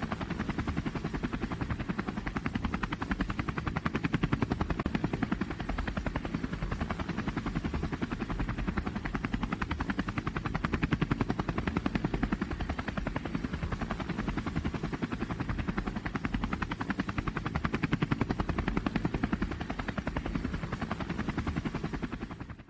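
DJI Phantom 2 quadcopter's propellers and motors, heard close from the on-board GoPro, making a steady, fast-pulsing buzz as the drone descends slowly in failsafe auto-landing.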